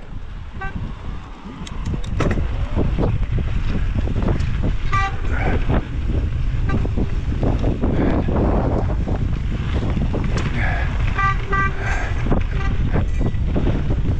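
Mountain bike running fast down a dirt trail: wind buffeting the microphone over the rumble and rattle of tyres on dirt. Short pitched buzzes of a freewheel hub come in when coasting, under a second in, about five seconds in and again around eleven to twelve seconds in.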